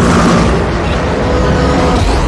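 Dramatic film-trailer music, with held orchestral chords over a heavy low rumble of boom-like disaster sound effects.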